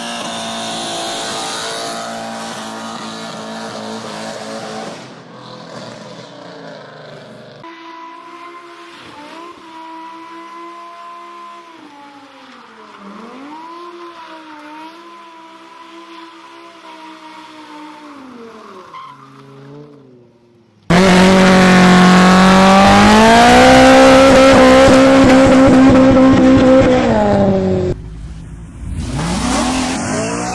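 Car engines held at high revs during burnouts with the rear tyres spinning and squealing, over several cut-together clips. The first is a Mercedes C63 AMG's V8 at a steady high rev. The middle clip's revs dip and rise as the throttle is worked. About two-thirds through comes a much louder, steady high-rev stretch that falls away, and at the very end a rev rising.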